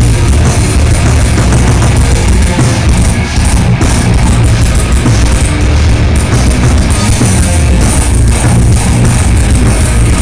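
Live heavy rock band playing loud with distorted guitars, bass and drum kit, recorded from inside the crowd so the sound is dense and bass-heavy.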